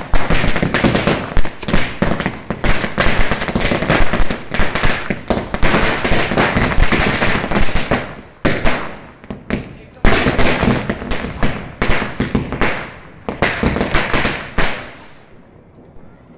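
A string of firecrackers going off in rapid succession, a dense run of sharp bangs. There is a brief lull just past the halfway mark, then another burst, and the bangs thin out and stop about a second before the end.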